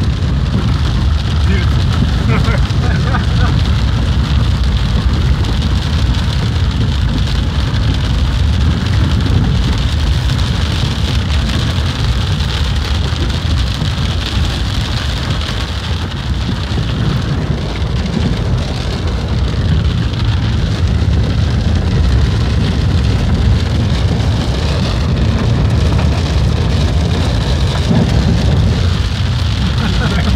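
Heavy rain beating on a car's roof and windshield, heard from inside the cabin, over the steady low rumble of the car driving on a wet dirt road.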